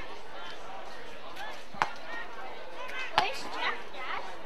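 Two sharp thuds of an Australian rules football being struck, about a second and a half apart, the second one louder, over players calling out across the ground.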